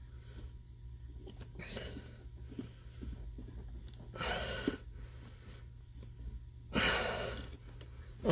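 Hands twisting a wire nut onto electrical wires, faint rustling and small clicks, over a steady low hum. Twice, about four seconds in and again about seven seconds in, a louder breath out.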